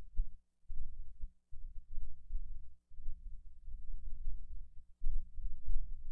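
Low, irregular rumbling thumps with a faint steady hum behind them; the sound cuts out briefly a few times.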